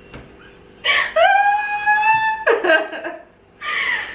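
A person's long, high-pitched squeal of laughter lasting about a second and a half, with a slightly rising pitch, followed by shorter bursts of laughter.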